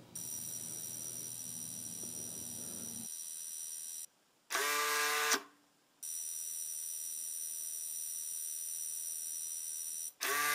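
A steady, faint high electronic whine with a light low hum. About four and a half seconds in it is broken by a single electronic beep of about a second, rich in overtones.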